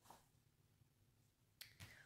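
Near silence, with a faint tap just after the start and a couple of short handling clicks near the end as a paperback coloring book is picked up and moved across a wooden table.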